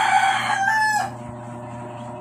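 A rooster crowing: one loud held call that steps up in pitch just past its middle and cuts off about a second in.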